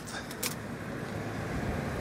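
Steady outdoor background noise of road traffic and air-conditioner hum, with a couple of faint clicks in the first half second.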